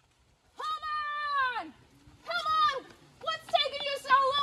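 High-pitched voices calling out: one long held cry that drops in pitch at its end, a shorter second cry, then excited shouting near the end.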